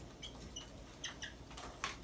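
Dry-erase marker squeaking on a whiteboard as a line is drawn: several brief high squeaks, then a longer scratchy stroke near the end.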